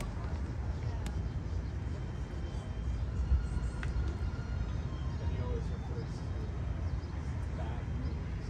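Wind rumbling steadily on the microphone, with a couple of faint clicks.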